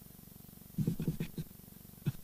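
A person chuckling, muffled and low, in a short run of quick pulses about a second in.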